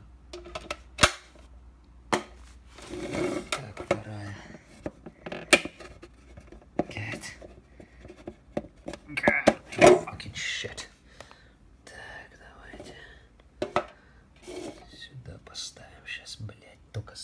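Hard plastic containers being handled: several sharp, separate clicks and knocks as plastic boxes knock against each other and the floor, with low mumbled speech in between.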